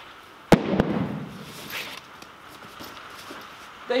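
A weight plate set down hard on the gym floor: one sharp clank about half a second in and a smaller knock right after, ringing briefly. A softer rustle follows as a bag is picked up.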